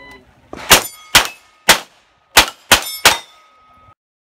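Six rapid shots from a Sig MPX pistol-caliber carbine, roughly half a second apart, each hit answered by the ring of a steel target plate, with a clear ring hanging on after the last shot.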